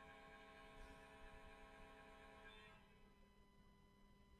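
Near silence: faint room tone with a faint steady hum that thins out about halfway through.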